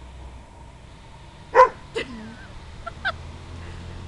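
Dog giving a loud, sharp bark, then a second shorter bark with a falling tail half a second later, and two small yips about a second after that.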